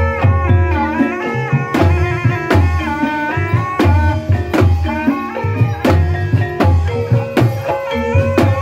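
Javanese gamelan music for an ebeg dance: kendang drum strokes keep a driving beat, with pitched gamelan notes and a gliding melody line above.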